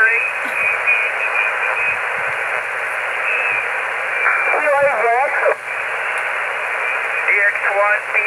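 HF amateur transceiver receiving lower sideband on the 40-metre band: a steady hiss of band noise cut off above the voice range. Garbled snatches of voice come through about four and a half seconds in and again near the end.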